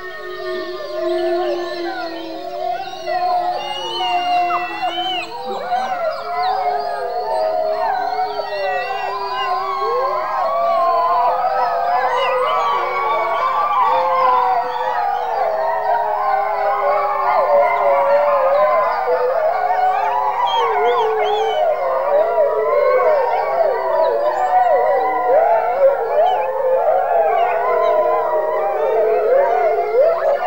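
A pack of wolves howling together: long, gliding, overlapping howls that start with a few voices and swell into a full, louder chorus from about a third of the way in.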